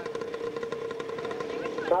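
A row of 125cc two-stroke motocross bikes running on the start line, their engines held at a steady pitch.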